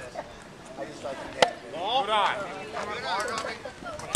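A single sharp pop about a second and a half in, a pitched baseball smacking into the catcher's mitt. Voices call out across the field afterwards.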